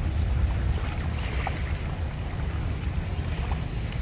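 Wind buffeting the microphone, a steady fluttering low rumble, on an open seashore.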